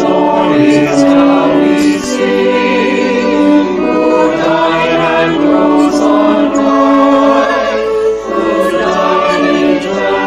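Mixed choir singing a hymn in long held notes, with organ accompaniment; the voices are recorded separately at home and mixed together.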